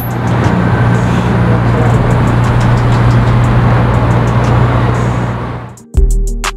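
Car engines and street traffic: a steady low engine hum under road noise, fading out a little before the end.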